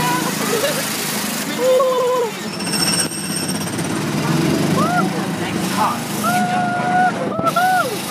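Small gasoline engine of a Disneyland Autopia ride car running with a steady, rough rumble while the car is driven along the track, with voices calling out over it and a longer held call near the end.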